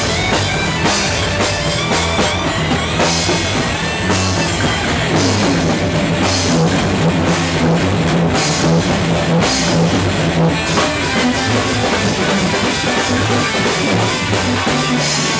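Live rock band playing fast heavy metal: a distorted Condor electric guitar, an electric bass and a drum kit, loud and continuous.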